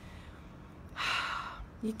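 A woman's audible breath in through the mouth, about half a second long, roughly a second into the pause between her sentences.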